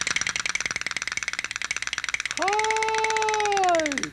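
Clapping from a studio audience, a dense rapid patter. About halfway through, a voice calls out one long drawn-out note that is held and then falls in pitch.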